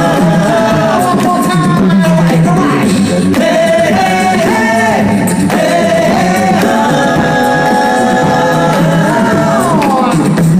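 Six male voices singing a cappella through microphones: held close-harmony chords over a low sung bass line, with a chord sliding down in pitch near the end.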